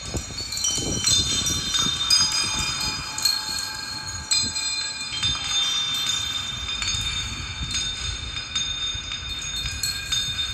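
Experimental sound-art performance: many overlapping high, sustained tones like chimes or struck metal, shifting and layered over a low, irregular rumble.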